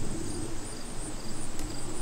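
Insects chirping faintly outdoors in short, evenly repeated pulses, over a low steady rumble.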